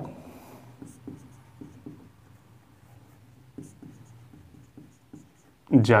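Marker pen writing on a whiteboard: a run of faint, irregular short strokes and scratches. A man's voice comes back in near the end.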